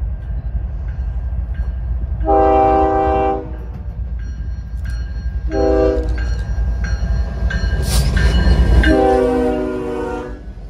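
BNSF freight train passing with its diesel locomotives' air horn sounding a chord: a long blast, a short blast, then another long blast near the end. Under the horn runs the steady rumble of the locomotives and wheels, growing louder as the engines come past.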